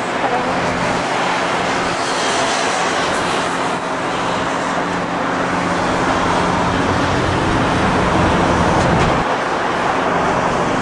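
Road traffic: a steady wash of passing cars, with the low drone of an engine underneath that drops away about nine seconds in.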